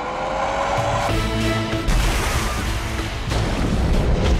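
Film trailer soundtrack: music with a tone rising in pitch over the first second, then held chords over a heavy low rumble, with a sudden loud hit about two seconds in and a rush of crashing water.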